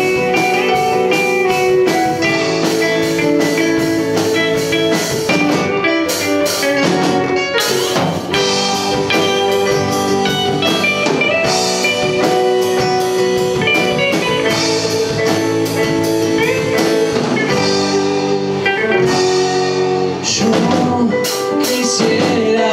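A small acoustic band playing an instrumental passage of a ballad: steel-string acoustic guitar, hollow-body electric guitar, upright double bass, keyboard and a drum kit, without vocals.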